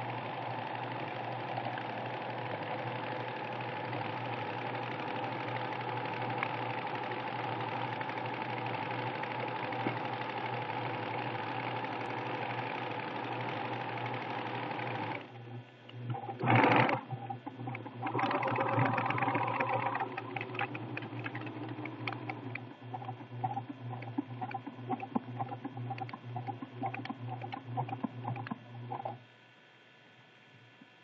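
Pfaff Creative 1473 CD electronic sewing machine sewing steadily for about fifteen seconds, then stopping briefly, with a short loud noise just after. It then sews again in an uneven, pulsing rhythm as it stitches a decorative pattern, and stops just before the end.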